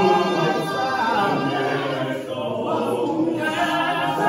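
Male a cappella choir singing together in close harmony, in the isicathamiya style, with no instruments.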